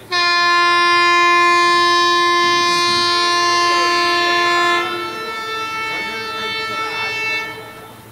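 An Indian Railways locomotive air horn sounds one long, loud blast starting suddenly at the outset and held steady for about four and a half seconds. A quieter horn of a different pitch then carries on until shortly before the end.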